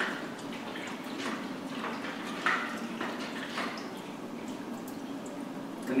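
Fixer remover sloshing inside a film developing tank as it is turned over in constant agitation, a swish about once a second, over a steady background hiss.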